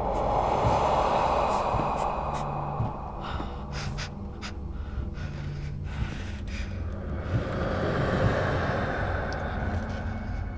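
Horror sound design: two slow, breathy swells, one at the start and one near the end, over a low rumbling drone, with a few faint clicks in between.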